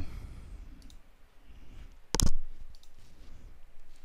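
A single sharp computer mouse click about two seconds in, with a few much fainter clicks around it, over low room tone.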